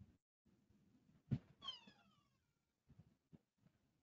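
Near silence: room tone, broken about a second and a half in by a faint knock and a short pitched call that falls in pitch, followed by a few tiny ticks.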